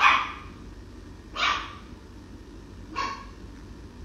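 A young puppy barking three times: short, high-pitched barks about a second and a half apart, the first the loudest. It is a puppy that has only just started to bark.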